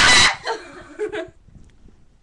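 A girl's loud, high-pitched shriek lasting about half a second, its pitch wavering up and down, followed by a few short bursts of laughter.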